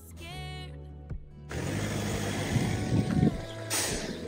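Background music with a singing voice, which cuts about a second and a half in to a steady rush of city street and traffic noise with some low thumps, and a brief sharp hiss near the end.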